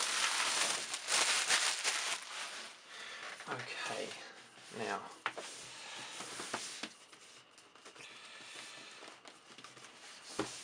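Plastic shrink-wrap crinkling as it is pulled off a cardboard box, densest and loudest in the first two seconds, then scattered softer rustles and handling of the box that die down near the end.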